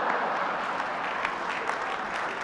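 Large dinner audience applauding and laughing after a joke, a dense steady wash of clapping.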